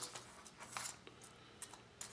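A few faint clicks and light taps as small locking pliers pick up a tiny curtain-rail roller wheel from a sheet of paper.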